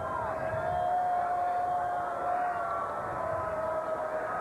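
Ballpark crowd noise with one voice holding a long, drawn-out call for about two seconds, then a shorter call near the end.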